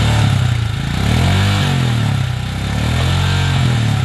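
Royal Enfield Himalayan's 411 cc single-cylinder engine idling through its exhaust. It is blipped twice, about a second in and again about three seconds in, the pitch rising and dropping back each time.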